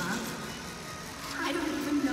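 Noisy arena ambience: audience murmur under the ice show's sound from the loudspeakers, with a voice coming in about one and a half seconds in.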